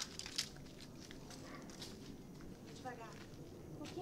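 Footsteps and rustling through debris-strewn ground, with a few sharp clicks and scrapes in the first second. A brief spoken fragment comes near the end.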